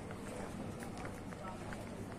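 Street ambience: footsteps on paving with indistinct voices of passers-by over a steady low city hum.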